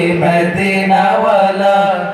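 A group of male voices singing a Bengali Islamic gojol (devotional song) through microphones and a PA. The melody is drawn out and wavering, with sustained vowels over a steady low drone.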